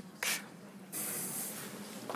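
Two bursts of hissing rustle, a brief one just after the start and a longer one about a second in, over a low steady hum.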